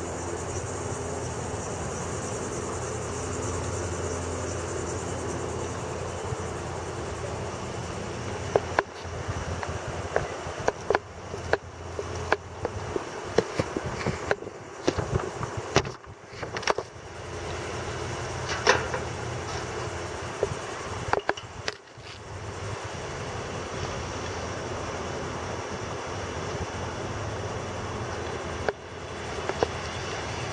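A steady low mechanical hum. From about a third of the way in to about two-thirds it is broken by irregular knocks and brief dropouts, then turns steady again.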